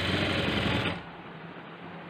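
Sewing machine stitching a sleeve seam in one quick burst of about a second, the needle's rapid ticking running together, then stopping; a quieter low hum remains.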